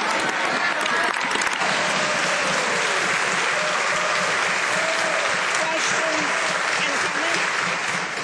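A chamber of legislators applauding, a dense steady clapping with voices calling out through it.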